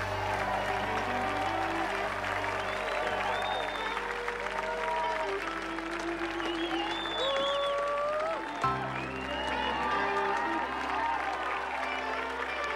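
Audience applauding over music of held chords; the chords change about nine seconds in.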